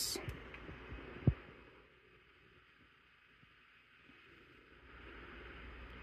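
A single dull, low thump of handling noise a little over a second in, then faint steady room tone.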